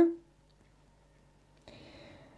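Near silence with a faint, soft rustle starting about a second and a half in.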